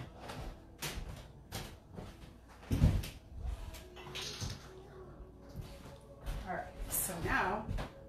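Kitchen clatter of things being put away: a few light knocks, then a heavy thump about three seconds in, the loudest sound here. A voice is heard briefly near the end.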